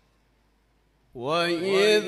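Near silence, then about a second in a man's voice begins melodic Quran recitation (tilawat), drawn-out notes with a slowly wavering pitch, through a microphone.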